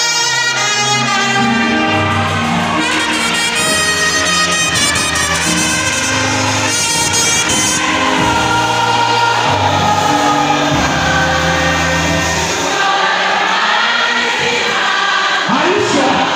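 Live gospel praise music: a trumpet plays rich, bright lines over a band with a steady bass, and a choir of voices sings, more prominent in the second half.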